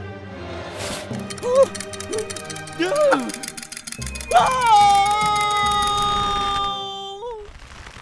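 Cartoon soundtrack: background music under short vocal cries, then a cry that bends up and is held for about three seconds, over a low rumble and a rapid, even clattering.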